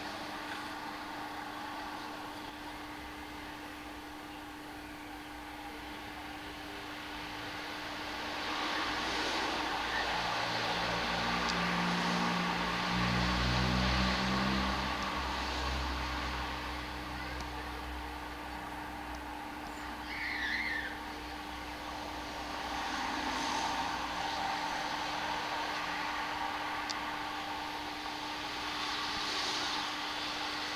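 Outdoor ambience with a car passing, its low engine rumble swelling in the middle and fading, over a steady low hum. There is a brief bird call about twenty seconds in.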